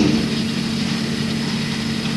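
Steady low hum under a constant hiss: the background noise of a low-quality 1970s amateur tape recording.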